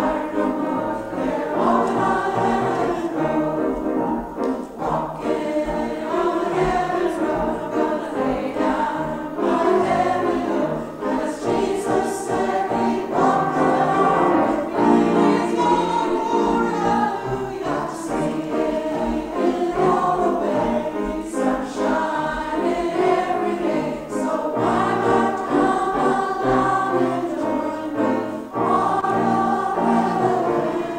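A church choir of mixed voices singing with piano accompaniment.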